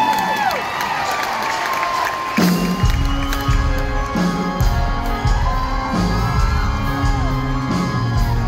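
Audience cheering and whooping. About two and a half seconds in, a live country band with acoustic guitar, electric guitar, bass and piano starts playing the song's intro, with steady low bass notes under held guitar tones.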